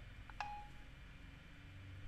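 iPhone 4S dictation stop tone as dictation ends with a tap on Done: a short two-note beep, a brief higher note then a slightly longer lower one, about half a second in.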